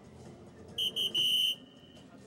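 DARTSLIVE electronic soft-tip dart machine sounding its hit effect as a dart registers in the triple 18: three short, high electronic beeps, the third held longest.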